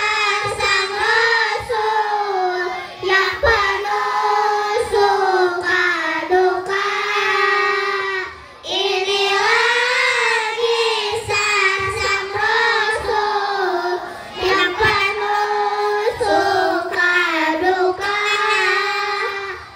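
A large group of children singing a melody together in unison, with a brief break between phrases about eight and a half seconds in.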